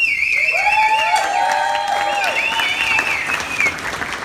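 Audience applauding and cheering, with voices calling out and a high, warbling whistle held twice over the clapping.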